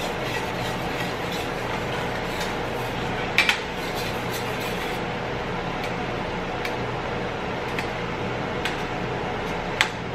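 A slotted spatula mashing and stirring cream cheese into Alfredo sauce in a stainless steel saucepan, knocking against the pan in a few sharp clinks, the loudest about three and a half seconds in. A steady hiss sits underneath.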